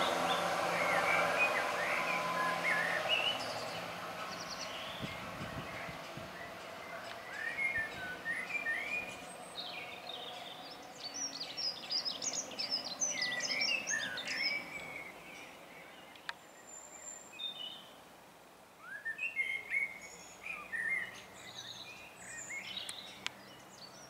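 Southern Class 171 diesel multiple unit fading as it pulls away down the line, its engine and wheel noise dying out over the first few seconds. Birds then sing and chirp in bursts, the loudest cluster about halfway through.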